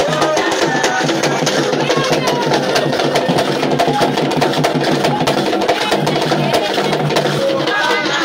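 Gabonese Elombo ritual music: fast, dense percussion with sharp clicking strokes, and voices singing along.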